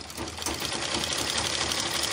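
Black domestic straight-stitch sewing machine starting up and then running steadily, a fast even clatter of stitches as it sews a seam.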